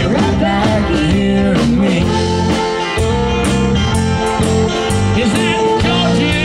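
Live country band playing an instrumental break: a fiddle plays a lead line with vibrato over electric guitars, bass and drums with cymbal hits.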